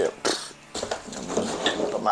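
A sharp click about a quarter second in, then light knocks and rustles of plastic bottles, rags and tools being handled.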